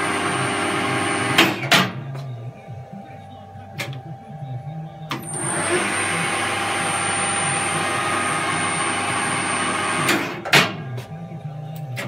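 Harrison M300 lathe running on its VFD-driven motor with a steady high whine, then two sharp clunks as the foot brake is applied and the spindle stops. About five seconds in it starts again and runs steadily until two more clunks near the ten-second mark stop it once more. Each time, the foot brake switch cuts the drive to the motor while leaving the VFD powered.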